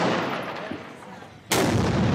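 Gunfire in street combat: a heavy shot echoes and dies away over the first second and a half, then a second loud blast comes about a second and a half in, an RPG being fired, with a rushing noise that carries on past the end.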